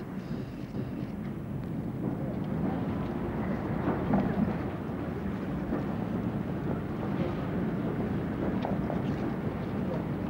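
Steady outdoor city ambience: a low traffic rumble with general street hubbub and a few faint distant voices.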